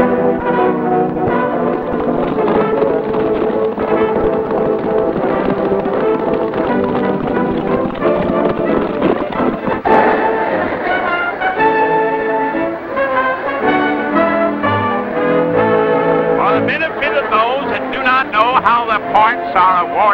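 Brass band music, with horns and trombones playing full sustained chords. Near the end, voices come in over the music.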